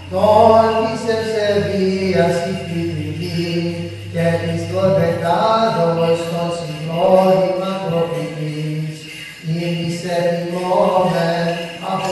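Byzantine church chant: a voice chants a hymn melody in phrases, over a low held drone (the ison) that drops out about four and a half seconds in.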